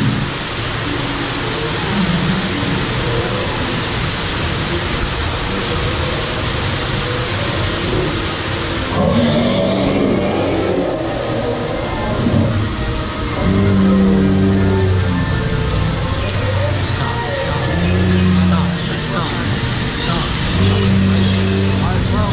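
A loud, steady rushing noise that cuts off suddenly about nine seconds in, followed by ride soundtrack music with long held low notes.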